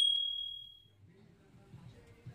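Decaying tail of a bell 'ding' sound effect, one high ringing tone fading out within about the first second. Near the end a faint murmur of shop ambience comes in.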